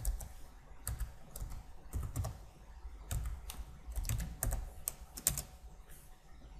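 Computer keyboard keystrokes typing a short command: about a dozen separate clicks at an uneven pace.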